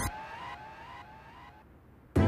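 The fading tail of a dramatic background-score riser: several rising tones die away over about two seconds until almost nothing is left.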